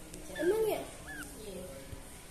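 Kittens mewing: one rising-and-falling mew about half a second in, then a short, higher-pitched squeak a little after a second in.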